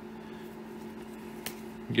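Quiet room tone with a steady low hum, and one short click about one and a half seconds in.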